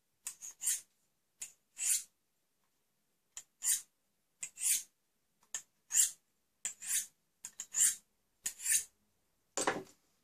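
A multitool's stainless-steel knife blade drawn along a sharpening rod: about a dozen short scraping strokes in an uneven rhythm, with a pause of about a second and a half near the start and a louder, fuller sound just before the end. The blade is being sharpened because it came dull.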